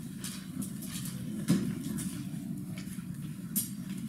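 Laptop keyboard typing: irregular light key clicks, with one louder knock about a second and a half in, over a steady low room hum.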